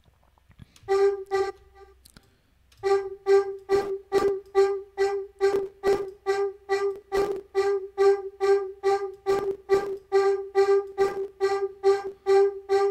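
Distorted, formant-shifted vocal synth patch playing repeated short stabs on a single G note, about three a second. A short burst comes about a second in, and the steady rhythm starts about three seconds in.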